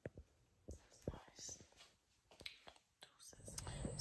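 Faint whispered voice with scattered small clicks and rustles. Near the end a low steady rumble comes in and grows.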